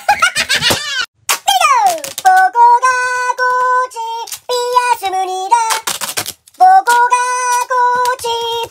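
A high-pitched, sped-up voice giggling, then a falling sliding tone. From about two seconds in comes a sped-up, chipmunk-like sung melody of held notes that jumps between two pitches.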